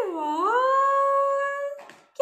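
A child's long wordless vocal sound: the voice dips and rises, then holds one high note for over a second before breaking off just before the end.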